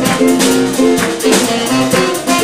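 Live band playing jazz-soul: a saxophone line over piano, bass and drum kit, with the drums keeping a steady beat.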